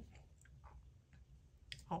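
A few faint, soft clicks scattered through a quiet pause, followed right at the end by a short spoken "uh".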